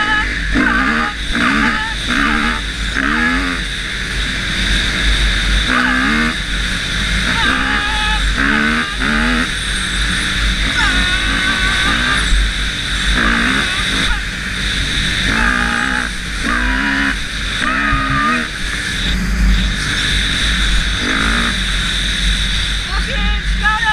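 Kawasaki KX250F four-stroke single-cylinder dirt bike engine being ridden, revving up and dropping back again and again as the throttle is worked and gears change, over steady wind noise on the camera.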